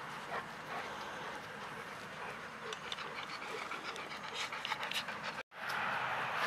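Dog panting, with a scatter of light clicks in the second half; the sound cuts out for a moment near the end.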